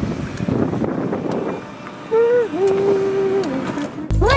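Car interior road noise while driving. About halfway through, a voice holds two long notes, one after the other.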